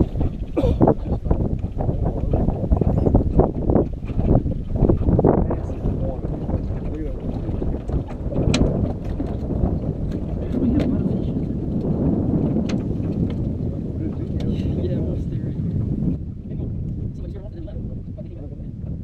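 Wind buffeting the microphone on a small open fishing boat on a lake: a loud, gusting rumble with irregular sharp knocks in the first few seconds. It eases off about two seconds before the end.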